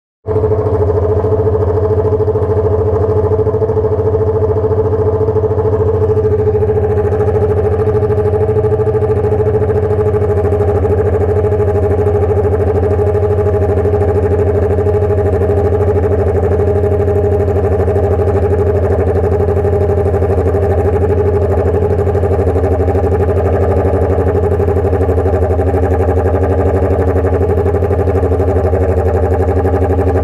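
Honda Hornet motorcycle idling steadily through a straight-through exhaust, a 3-inch pipe with no muffler.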